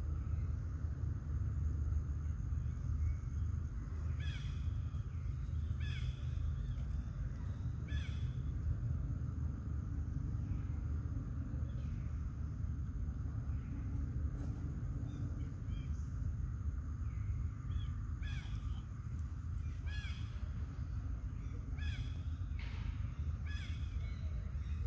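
Short, arched animal calls repeated about every two seconds, in one run early on and another near the end, over a steady low rumble.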